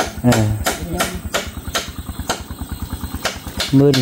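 Hammer blows on wood, a steady run of sharp knocks about three a second.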